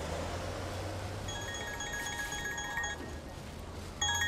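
A mobile phone ringtone, a short repeating electronic melody, starts about a second in over low, steady street traffic noise.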